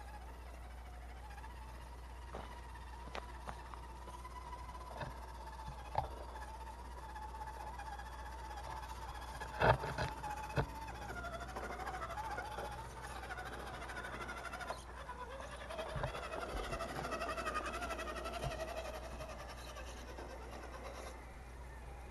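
RC rock crawler's electric drive motor whining, its pitch wandering up and down as the truck creeps over rock, with scattered knocks of the tires and body on the stone. A sharp clatter about ten seconds in is the loudest moment.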